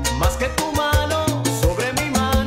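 Salsa romántica music playing at full volume: a band with a steady bass line, regular percussion strikes and melodic instrument lines.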